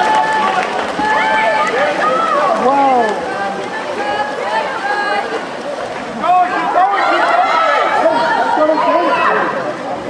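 Many voices shouting and cheering over one another: a crowd of spectators and players calling out during play, louder again from about six seconds in.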